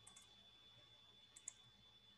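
Faint computer mouse clicks: a pair just at the start and a sharper pair about one and a half seconds in, over a faint steady high whine.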